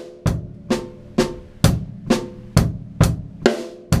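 Drum kit playing a slow single paradiddle groove: the right hand plays the hi-hat, each stroke doubled by the bass drum, and the left hand plays the snare. The strokes are even, with a strong hit about twice a second.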